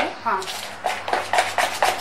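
Spoon beating thick besan (gram-flour) batter in a plastic bowl: quick, even strokes about four or five a second, pausing briefly near the start.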